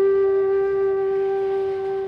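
Background music: one long held note on a flute-like wind instrument, steady in pitch and slowly fading.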